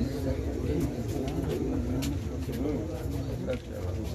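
Indistinct, low-level men's voices in conversation, too muffled to make out words.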